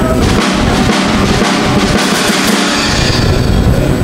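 Murga drum section, bass drum (bombo), snare (redoblante) and cymbals (platillos), playing a loud, driving rhythm.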